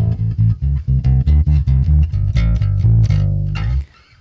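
Electric bass guitar played through a Line 6 Bass POD with its compressor set to an infinite ratio: a quick run of low notes, about four a second, heavily squashed so that every note comes out at nearly the same loudness. It stops just before the end.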